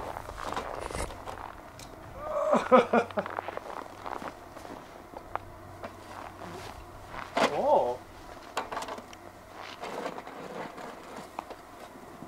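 Telescoping snow roof rake knocking and scraping as it is worked through snow on roof solar panels, in scattered short strokes. A man's voice breaks in twice briefly, near 3 seconds and 7.5 seconds.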